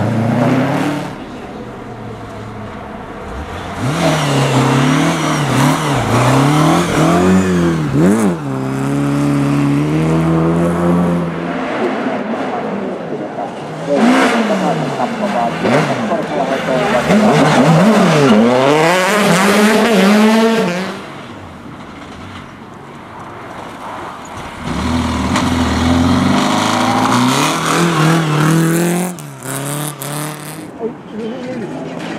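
Rally cars passing one after another at full throttle, engines revving hard with pitch climbing and dropping at each gear change and lift; three passes of several seconds each, with quieter gaps between.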